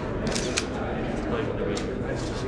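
Still-camera shutters clicking, a quick cluster of clicks about half a second in and another click near the end, over a room murmur of indistinct talk.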